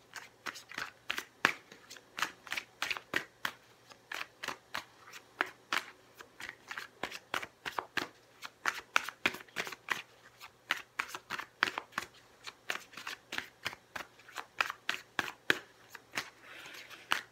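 A tarot deck being shuffled overhand by hand: short card slaps at an even pace of about four a second.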